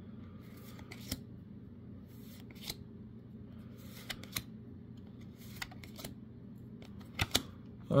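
Trading cards being flipped through by hand and set down on a playmat: a few faint, scattered flicks and slides over a low steady hum, with a couple of sharper clicks near the end.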